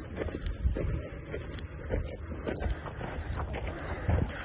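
Wind rumbling on a hand-held phone microphone while walking, with irregular soft knocks and rustles from steps and gear.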